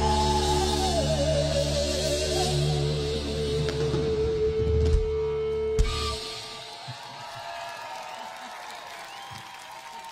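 A live rock band ends a song: a long held note with vibrato over sustained chords closes with a final hit about six seconds in. The music then stops, leaving quieter crowd noise.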